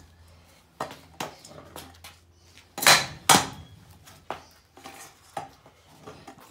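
Aluminium stunt scooter clattering on concrete during a whip trick: sharp metal knocks of the deck and wheels hitting the ground, loudest in two knocks close together about three seconds in, with lighter knocks around them.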